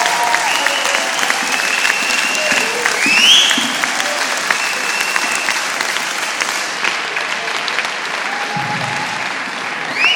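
Audience applauding steadily for a performance, with voices calling out over the clapping and one call rising in pitch about three seconds in.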